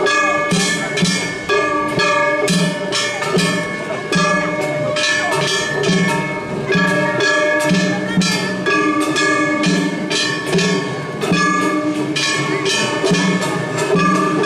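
Festival hayashi played on a float: rapid, continuous clanging of hand-held metal gongs (surigane) over a pulsing taiko drum beat, with a flute melody held in long notes that step in pitch.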